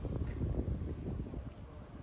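Wind buffeting the microphone: an irregular low rumble that eases off near the end.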